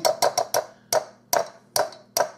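Wire potato masher tapping against a glass bowl of sliced strawberries: a quick run of four sharp clinks, then three slower ones.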